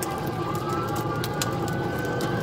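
Police car siren in a slow wail, rising across these seconds, heard over steady engine and road rumble from a patrol car in pursuit at about 70 mph, with a few faint sharp clicks.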